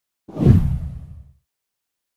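A deep whoosh sound effect from an animated channel intro. It swells in suddenly about a quarter second in and fades away over about a second.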